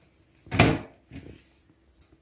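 The lid of a round cardboard gift box being pulled off: one short, loud rub about half a second in, then a softer, lower handling sound a moment later.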